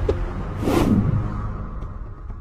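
A sound-effect whoosh about half a second in, swelling and falling in pitch as it fades, over a low, steady drone of music.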